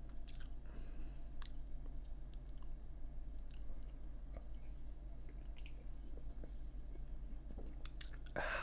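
Quiet close-up mouth sounds of sipping and swallowing a soft drink from a can, with scattered small clicks, over a steady low hum.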